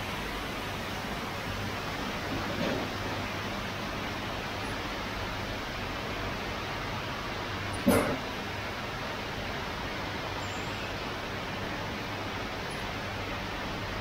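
Steady workshop noise with a faint low hum, and one short sharp sound about eight seconds in.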